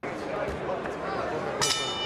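Arena crowd murmur, then about one and a half seconds in a boxing ring bell is struck once and keeps ringing, signalling the start of the final round.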